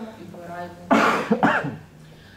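A person coughing: two loud, close coughs about a second in, the second shorter and following right after the first.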